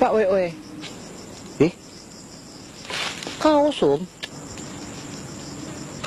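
Insects, likely crickets, chirping steadily in an even, high-pitched pulsing trill that runs on beneath the voices.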